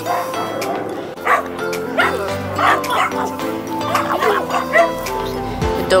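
Dogs barking excitedly at something in the bushes, several short barks spread over a few seconds, over background music.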